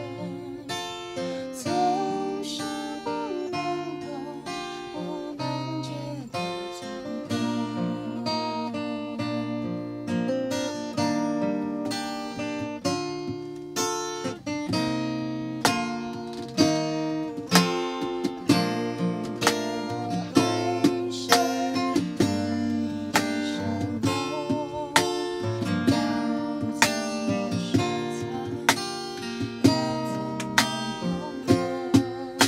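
Acoustic guitar strummed in a steady rhythm, with a man singing along; the strums hit harder in the second half.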